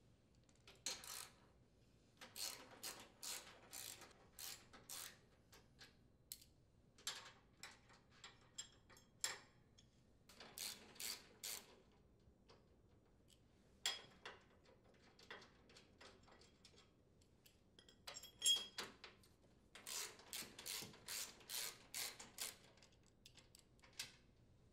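Hand socket ratchet clicking faintly as it unthreads steel mounting bolts: short ratcheting bursts, about two or three a second, in several runs with pauses between them.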